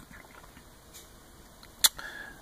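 A quiet pause with one short, sharp click near the end.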